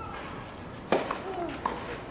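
A tennis racket striking the ball: one sharp crack about a second in, the serve, then a fainter hit a little over half a second later as the ball is returned. A voice sounds briefly around the shots.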